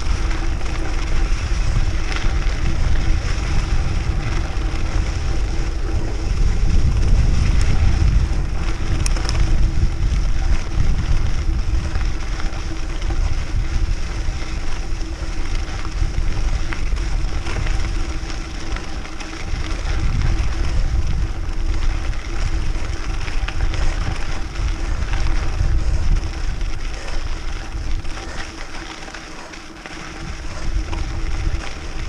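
Mountain bike tyres rolling over a dirt fire road at riding speed, with wind on the action camera's microphone making a steady low rumble. The rumble eases near the end.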